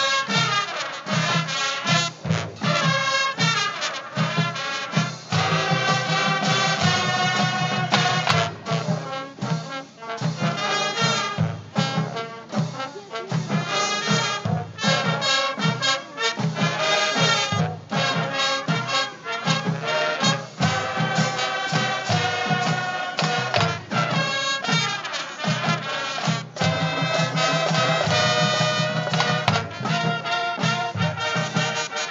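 Marching band playing a funk tune live, brass horns carrying the melody over a steady drum beat, heard outdoors from the stands.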